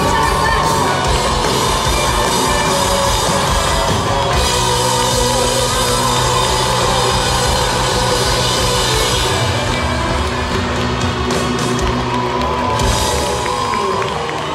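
Live rock band playing loud on a concert stage, with the crowd whooping and cheering over the music.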